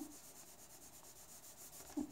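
Faint rubbing of a blue coloured pencil across drawing paper as the sky is shaded in left-to-right strokes.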